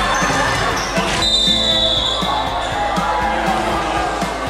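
A basketball bouncing on a hardwood gym court, a knock about every half second, under a crowd of voices. A little after a second in, a high shrill note sounds for about a second.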